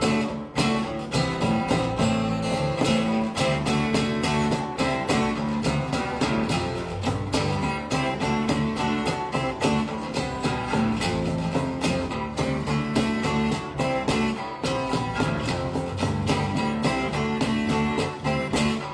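Live band playing: strummed acoustic guitars over an electric bass, with a cajón keeping a steady beat.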